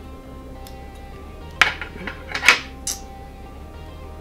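Sharp metallic clicks from fly-tying scissors, two loud ones about a second apart and a smaller one after, over steady background music.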